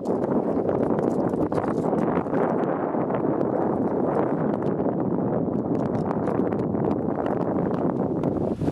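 Wind buffeting the microphone in a steady rush, with many small clicks and clinks of metal harness hardware being clipped and handled.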